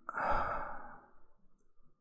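A man's sigh, one breathy exhalation that starts at once and fades away over about a second.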